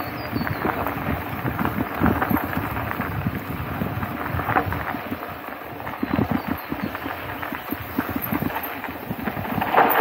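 Gravel bike tyres rolling and crunching over a dirt-and-gravel trail, with a steady rumble and irregular knocks and rattles from the bike as it goes over bumps. A louder rush of noise comes just before the end.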